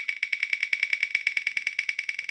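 A phone's spin-the-wheel app playing its ticking sound as the on-screen wheel spins: a rapid, even run of sharp clicks, over ten a second, each with a high tone in it.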